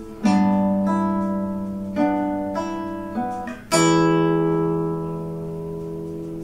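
Classical nylon-string guitar fingerpicked in a slow melody, single notes plucked roughly every half second to second over a ringing bass note. A last chord about four seconds in is left to ring and slowly fades.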